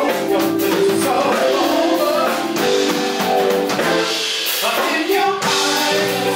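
Live funk band playing, with several singers' voices over keyboard, congas and a horn section, at a steady beat.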